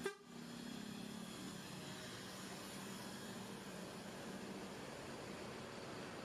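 Mercedes-Benz intercity coach's diesel engine running with a low, steady hum as the bus pulls slowly away.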